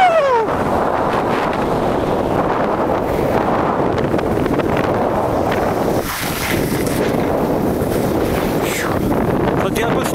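Wind rushing over the camera microphone and skis scraping across the snow during a downhill ski run, with a brief dip about six seconds in. A short falling squeal right at the start.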